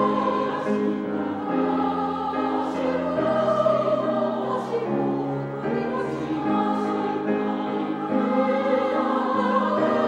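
Women's choir singing a Japanese song in harmony, with piano accompaniment. The voices hold chords that move every second or so.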